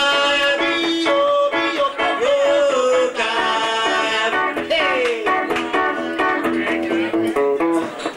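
Live music: guitar playing with a man singing long notes that slide and waver in pitch.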